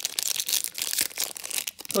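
Foil trading-card pack wrapper crinkling and tearing as it is pulled open by hand: a dense run of crackles.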